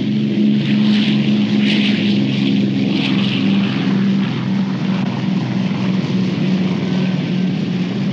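Piston engines of WWII propeller bombers droning steadily, a low multi-tone hum with a hiss of propeller wash on top that eases a little after about three seconds.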